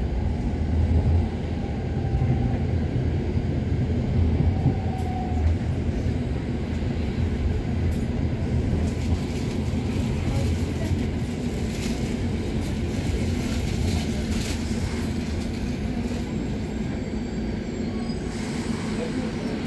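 Interior running noise of a WKD EN97 electric multiple unit under way: a steady low rumble of the wheels and running gear, with a faint brief whine a couple of times in the first seconds.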